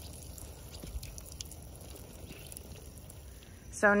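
Faint patter of water sprinkling from a tin watering can's rose onto seedlings in soil-filled planters, with a few soft ticks.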